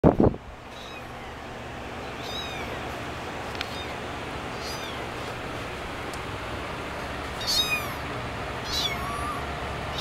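Young kittens mewing: about five or six thin, high calls that sweep downward in pitch, the loudest near the end. A brief knock at the very start.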